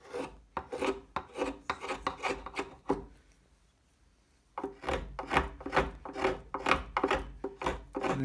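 Small drawknife shaving wood off a violin neck in quick scraping strokes, about two to three a second. The strokes stop for about a second and a half near the middle, then resume at a quicker pace.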